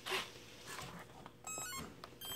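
Electronic speed controller playing its short run of stepped power-up beeps through the brushless motor about one and a half seconds in: the sign that the plane's electronics have just been powered on. A brief knock of handling at the start.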